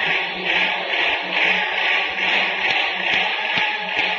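A group singing a Hindu devotional bhajan together, heard on an old, hissy recording.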